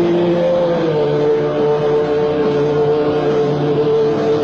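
Distorted electric guitars holding long sustained notes, one sliding slightly down in pitch about half a second in, with a lower note coming in about a second in.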